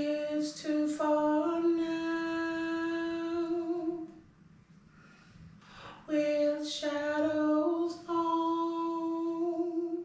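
A woman singing a harmony line unaccompanied, twice: each phrase is a few short notes sliding up into one long held note, with a pause of about two seconds between the two.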